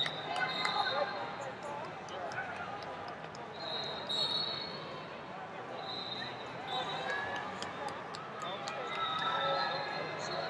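Busy arena hubbub at a multi-mat wrestling tournament: many indistinct voices echoing in a large hall, with several short, high, steady whistle blasts from referees and scattered sharp knocks and clicks.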